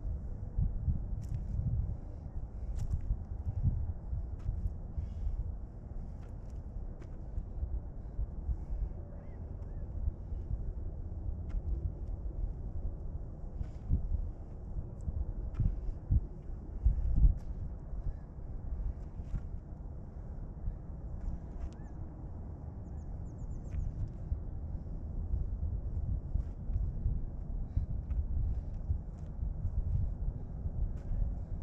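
Wind buffeting the microphone in a low, uneven rumble, with scattered faint clicks and scuffs of shoes shifting on gravel. A louder thump comes a little past halfway.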